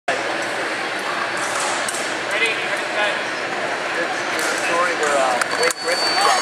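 Busy murmur of many voices in a large sports hall, broken by several sharp metallic clicks of sabre blades striking. A thin, steady high tone starts near the end.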